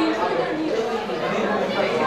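Many people talking at once in a large room: an indistinct hubbub of overlapping conversations.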